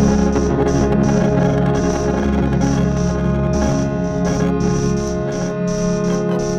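Improvised experimental drone played on an electric guitar through effects pedals: many sustained, organ-like tones held together, with a high tone pulsing about twice a second. The deepest bass drops out near the end.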